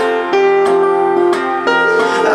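Acoustic guitar strummed over sustained piano chords in a short instrumental passage of a live indie-pop song, with a few strums marking the beat.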